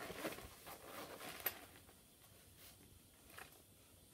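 Faint scratching and rustling of coloured pencils being handled and drawn across sketchbook paper, with a light click about one and a half seconds in.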